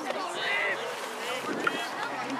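Distant shouts and calls from players and spectators across an outdoor field, with wind noise on the microphone. A single sharp crack stands out near the end.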